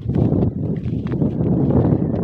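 Wind buffeting the microphone: a loud, uneven low rumble with no clear tones or strikes.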